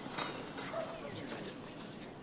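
Faint, indistinct murmuring of several voices at once, with a few light clicks.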